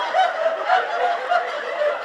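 An audience laughing together at a joke: many voices at once, rising and falling in repeated peaks.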